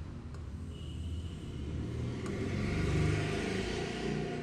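A low rumble that builds to a peak about three seconds in, then eases off slightly.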